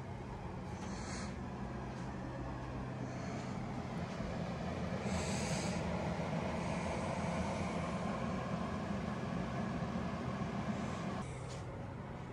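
A person sniffling and breathing heavily through the nose, a few short sniffs over a steady rushing hum that grows louder in the middle and drops off suddenly near the end.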